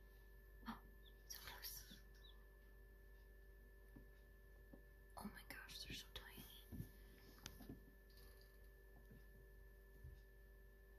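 Near silence with faint whispered voices, once about a second and a half in and again around five to six seconds in, over a faint steady hum.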